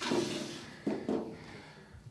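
Crumpled paper rustling as it is grabbed and moved: a sudden crinkle at the start that fades over about half a second, then a few softer rustles about a second in.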